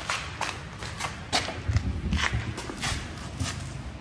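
Footsteps on a hard shop floor, a string of short, irregular knocks at a walking pace as the camera operator moves along the side of the motorhome.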